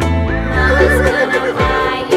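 A horse whinny sound effect, a quivering neigh lasting about a second, over upbeat children's music with a steady bass.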